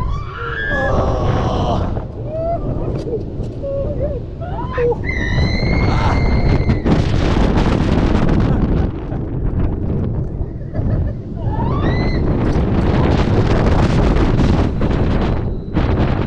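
Heavy wind rushing over the microphone of a launched roller coaster in motion, with riders screaming and yelling in several bursts: near the start, about five seconds in with a long held scream, and again about twelve seconds in.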